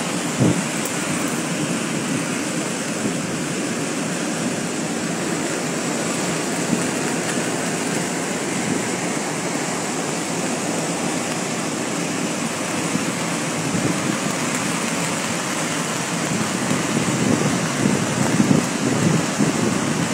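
A waterfall in flood, a heavy torrent of muddy water plunging down a cliff, making a steady roar of falling water that grows a little louder and more uneven near the end. The fall is swollen with storm runoff.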